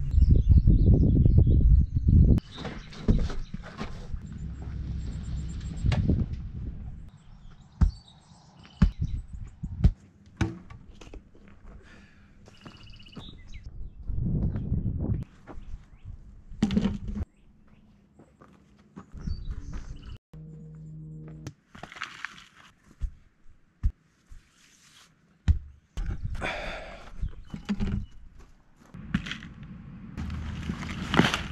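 Irregular dull thuds of a sledgehammer packing damp dirt into a used tire, over background music.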